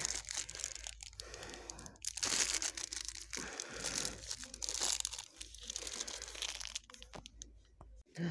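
Thin plastic bead packet crinkling in irregular bursts as it is handled close up, dying down near the end.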